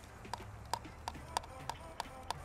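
Faint, irregular small clicks and taps as a GPS antenna cable's connector is handled and plugged into a drone-mounted LiDAR scanner by hand.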